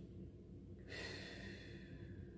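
A person breathing out audibly in a soft sigh, starting about a second in, over a faint low room hum.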